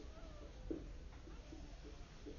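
Marker squeaking on a whiteboard while writing: a thin gliding squeak near the start, then several short squeaky strokes.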